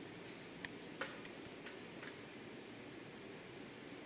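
Faint sounds of a calligraphy brush working on hanshi paper: a few small ticks, two of them close together about a second in, and light paper rustle over quiet room hiss.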